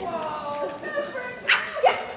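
Puppies yipping and whining as they play-fight, with two sharp, short yelps about one and a half seconds in and again near the end.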